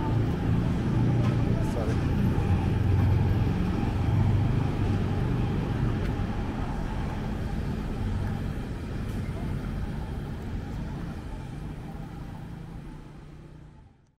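Street traffic ambience: motor vehicle engines running with a steady low hum over road noise, fading out near the end.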